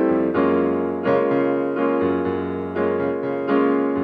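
Piano played with both hands in a bossa nova rhythm: a held bass line under chords struck in an uneven, syncopated pattern, a new chord roughly every half second to second.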